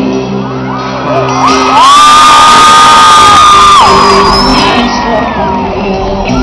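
A live pop band playing, with an audience cheering and whooping over it; about a second and a half in, one long high cry rises, is held for about two seconds as the loudest sound, then falls away.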